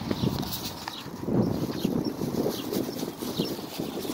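Irregular rustling and light knocking of shopping items being handled and packed away, with wind buffeting the phone's microphone.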